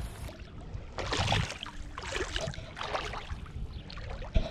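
Shallow water sloshing and lapping over a pebble bottom in irregular, fairly quiet surges as a small action camera on a stick is dipped into it.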